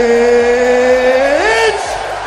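A man's long drawn-out announcer shout, one held vowel creeping slowly up in pitch, then sweeping sharply upward and breaking off a little before the end, over the noise of an arena crowd.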